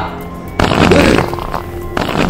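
A loud fart lasting about a second, starting just over half a second in, over background music.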